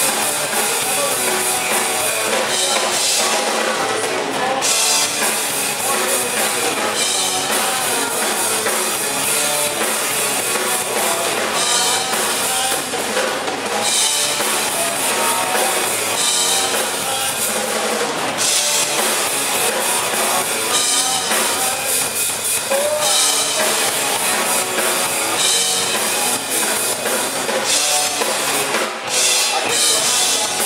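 Live rock band playing an instrumental passage: drum kit to the fore, with electric guitars, steady and loud.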